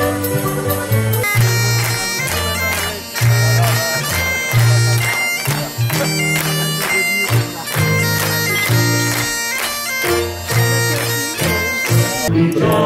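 Lively Scottish folk dance tune played on accordion and fiddle, with a strong, steady beat and a reedy, bagpipe-like tone.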